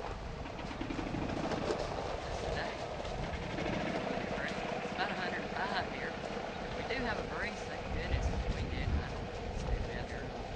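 Small engine of a golf-cart-style utility vehicle running steadily as it creeps over gravel, with a few short high chirps over it around the middle.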